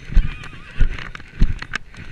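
A horse cantering on turf: dull hoofbeat thuds about every 0.6 s, with light clicks on top and a brief wavering sound shortly after the start.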